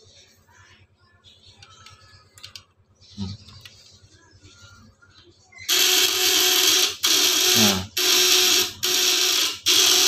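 A homemade platina-type fish shocker switches on about six seconds in. Its vibrating contact-breaker points drive a step-up transformer, giving a loud, steady buzz with a fixed pitch. The buzz cuts out briefly several times. It is heavy because the device is working hard under a 1500-watt bulb load. Before it starts there are only faint handling clicks.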